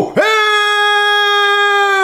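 A man's voice singing one long, steady, high note, broken briefly just as it starts and then held again, sliding down in pitch as it trails off near the end.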